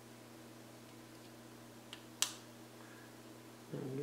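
Small plastic parts clicking as an FPV antenna is pushed into a 3D-printed TPU holder: a faint click, then a sharp snap about two seconds in, over a steady low hum.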